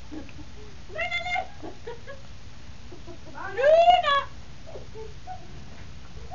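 Puppy whining behind a baby gate: a short high whine about a second in, then a longer, louder one that rises and falls in pitch around the middle.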